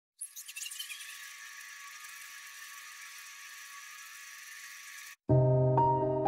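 Faint, high-pitched sparkling sound effect of an intro animation: a few quick falling chirps at the start, then a thin steady hiss. About five seconds in it cuts off and louder piano background music begins.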